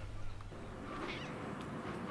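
A domestic cat meowing, about a second in, after an outdoor wind rumble cuts off half a second in.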